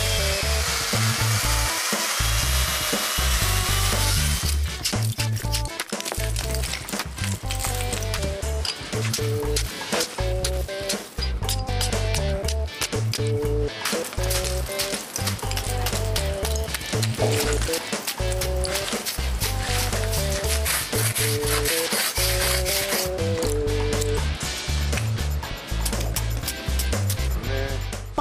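Background music with a steady beat and a repeating bass line, over a loud hiss of a power tool cutting into a block of ice for the first few seconds, returning briefly near the end.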